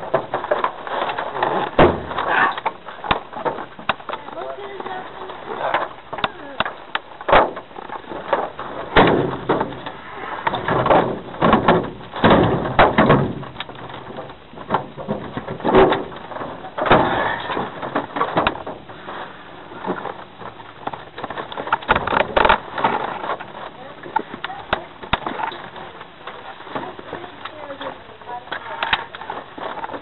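Handling noise in a small open cockpit: irregular knocks, clicks and rustling, with indistinct voices at times.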